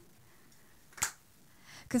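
A pause in unaccompanied singing: quiet room tone broken by a single short, sharp click about a second in, before the singer's voice comes back in at the very end.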